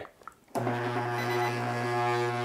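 Microwave oven transformer humming loudly as it is switched on with its single-turn 3/0 AWG copper secondary short-circuited, pushing thousands of amps through the wire. The low, steady buzzing hum starts about half a second in and holds level.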